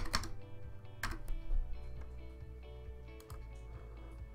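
Background music with steady held notes, under a few sharp computer keyboard clicks: a pair at the start, the loudest about a second in, and two more near the end, as a stock sell order is entered.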